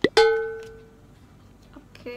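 A short sharp click, then a single bright plucked note that rings out and fades away over about a second: an edited-in sound effect.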